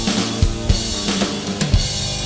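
Roland TD-12 electronic drum kit played along to a rock recording, with regular kick and snare hits over sustained guitar-band backing.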